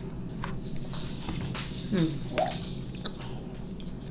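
Close-miked eating of a soft cinnamon bun: wet chewing and small mouth clicks, with a short hummed "mm" about two seconds in.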